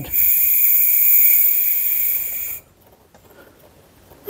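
Compressed air hissing through the air compressor's regulator and hose, with a faint steady whistle, for about two and a half seconds before cutting off abruptly.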